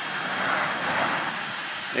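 A car passing on the road: tyre and engine noise that swells to a peak about a second in, then fades.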